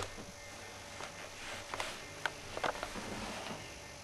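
Faint rustling and a few soft clicks and creaks as someone sits down on a padded metal folding chair.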